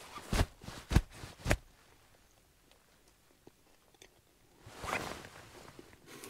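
A person chewing a mouthful of bread sandwich: three short wet mouth clicks about half a second apart, then quiet, then a soft breath near the end.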